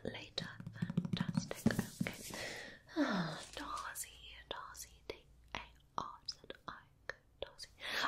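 A woman's soft whispering and murmured 'mm' sounds as she reads to herself, with one falling hum about three seconds in. In the second half come scattered small clicks and mouth sounds with short pauses.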